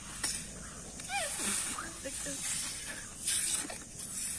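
Rubber balloons being blown up by mouth: repeated breathy puffs of air, the strongest near the end, with a short squeaky glide about a second in.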